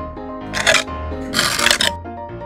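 Two short rasping rips of Velcro, a toy cabbage's hook-and-loop halves being cut apart, the second rip a little longer. Steady children's background music plays throughout.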